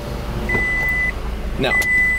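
A car's warning chime beeping inside the cabin: a single high tone of about half a second, repeating about every 1.2 seconds, twice here, over a low steady hum.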